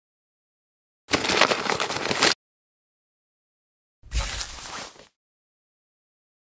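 A tomato being cut into wedges on a wooden cutting board: two separate bursts of wet slicing sound. The first comes about a second in and lasts just over a second; the second, about four seconds in, is shorter and starts with a low thud.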